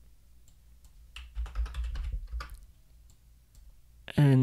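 Computer keyboard typing: a quick run of about ten keystrokes from about a second in to about two and a half seconds in.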